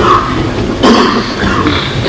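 A man coughing and clearing his throat close to a microphone: two rough bursts, one at the start and one just under a second in.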